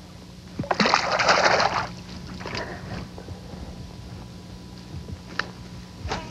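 A largemouth bass splashing at the water's surface for about a second while held by the lip, followed by a few smaller water sounds and a short click near the end.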